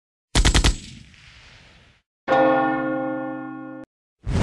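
Intro sound effects: a rapid burst of four gunshots with a fading tail, then a single bell toll that rings for about a second and a half and cuts off suddenly.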